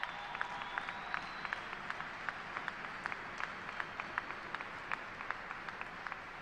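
Audience applauding: many people clapping steadily, with single sharp claps standing out.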